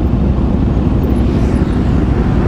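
Aprilia RS660's parallel-twin engine running at low revs, a steady low rumble.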